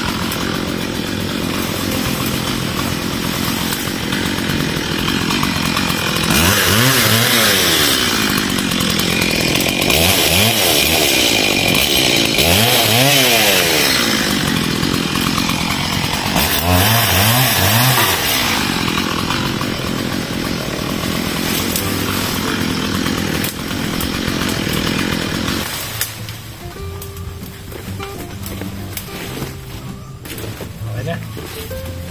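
Chainsaw cutting through bush branches, revved up and down again and again as it bites into the wood. It drops much quieter near the end.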